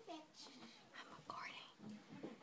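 Faint, hushed whispering from a person in the dark.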